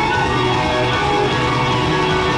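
Live rock band playing loudly, electric guitars to the fore with gliding, bending lead lines over the full band.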